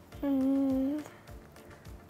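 A young boy's thinking 'hmm', one steady hum of under a second, over faint background music with a soft, regular low beat.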